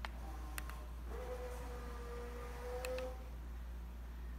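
Remote-button clicks, then a motorised zebra roller blind's tubular motor running with a steady hum for about two seconds, stopping with another click near three seconds in.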